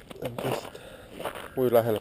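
A man's voice in two short utterances, the second a louder exclamation near the end.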